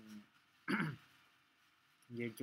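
A man clearing his throat once, briefly, a little under a second in.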